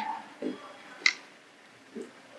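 A few short, sharp clicks about half a second and about a second in, from hands touching a wooden simsimiyya (an eight-string Port Said lyre) just after its playing stops; low room sound in between.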